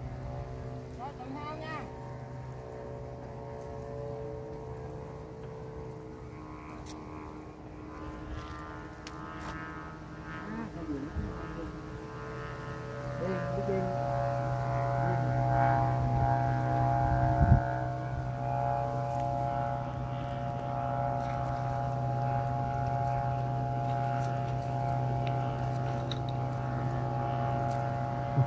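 A set of Vietnamese kite flutes (sáo diều) droning in strong wind: several steady tones sounding together as a chord. They swell louder about thirteen seconds in and hold there.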